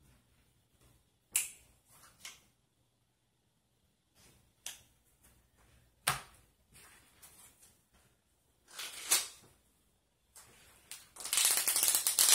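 Playing cards being handled: scattered sharp snaps and taps of cards set down and picked up a second or two apart, then a dense rustle of cards being gathered and squared near the end.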